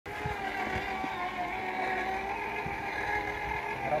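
Motorized wheelbarrow's electric drive running with a steady whine, with a few soft knocks.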